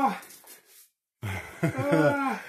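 A man's wordless cry from the cold shock of snow being rubbed on his skin, dropping in pitch and fading just after the start; after a brief silence, more voiced exclamations follow.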